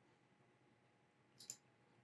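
Near silence, with a single short computer mouse click about one and a half seconds in.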